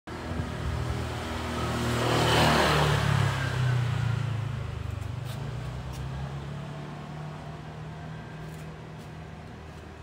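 A motor vehicle passing by on the road, growing louder to a peak about two and a half seconds in and then slowly fading away as its engine hum trails off.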